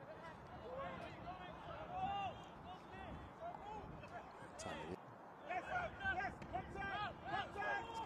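Footballers calling and shouting to each other on the pitch, distant and unintelligible, over open-air ambience, with a brief cut about five seconds in.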